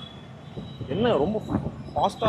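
A short burst of a person's voice about a second in, over low, steady background noise.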